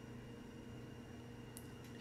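Quiet room tone with a faint steady hum, and a single faint click about a second and a half in.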